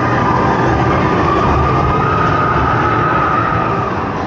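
Steel roller coaster train running along its track: a steady rumble with a high, even wheel whine held almost to the end, then fading.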